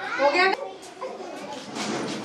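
High-pitched voices chattering and calling out, like children at play, with a loud call near the start and more near the end.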